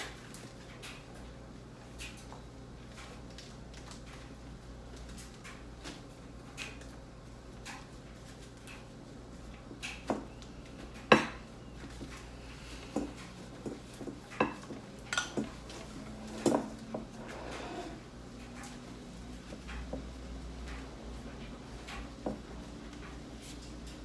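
Metal spoons clinking and scraping against bowls and plates as masa is spread onto corn husks for tamales: scattered light clicks, with a busier run of sharper knocks in the middle.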